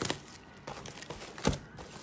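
Faint crinkling of plastic trading-card packaging being handled, with a few small clicks.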